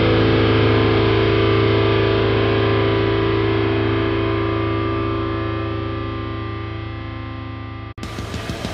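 Deathcore music: a heavily distorted electric guitar chord held and ringing out, slowly fading as the song ends, then cutting off abruptly at the very end.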